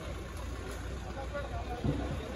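A 4x4 off-road jeep's engine running low as it crawls over a muddy track, with spectators talking over it. There is a brief thump near the end.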